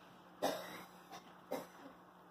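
A person coughing twice, about a second apart, the first cough louder.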